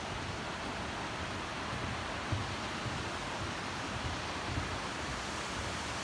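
Steady rushing of a mountain stream and waterfall in the gorge below, an even hiss without a break, with a few soft low thumps from footsteps on the suspension bridge.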